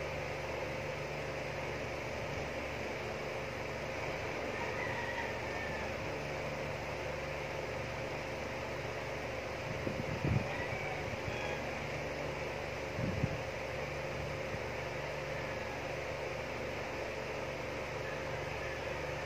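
Steady mechanical background hum with a faint steady tone in it. Two brief soft knocks come about ten and thirteen seconds in.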